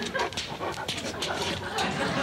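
A dog making vocal sounds, short whines and noises.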